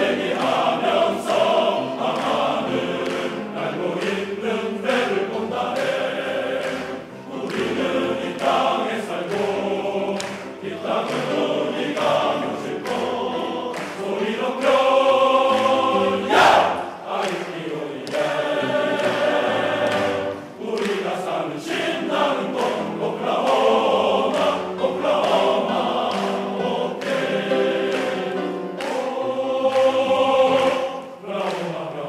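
Large men's chorus singing in harmony, many voices together, with short breaks between phrases.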